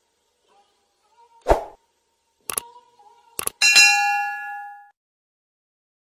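Sound effects for an animated subscribe button: a thump about a second and a half in, then two sharp clicks, then a bright notification-bell ding that rings for about a second and fades away.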